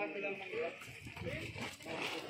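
Indistinct voices of several people talking, with a faint steady high-pitched tone behind them.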